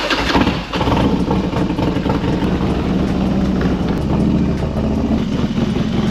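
Harley-Davidson motorcycle's V-twin engine running steadily at idle just after being started.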